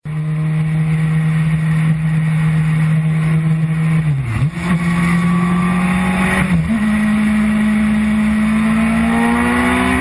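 Sport motorcycle engine heard on board at highway speed, with heavy wind rush. The engine note is steady, dips briefly twice and each time comes back at a higher pitch, then climbs steadily near the end as the bike accelerates.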